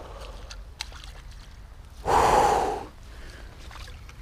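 A man's loud, breathy gasp lasting just under a second, about two seconds in, with a few faint clicks before it.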